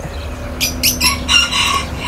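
A few short bursts of rustling around the middle, then a rooster crowing briefly near the end, over a steady low hum.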